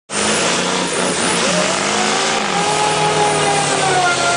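Diesel pickup truck doing a burnout: the engine revving hard with its rear tyres spinning. The sound cuts in abruptly, and the engine pitch climbs over the first couple of seconds, then holds high.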